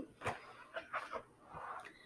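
A few soft clicks and rustles of stiff photo cards being handled, set down and picked up.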